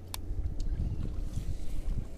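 Wind rumbling on the microphone, with one sharp click shortly after the start and a fainter one about half a second in.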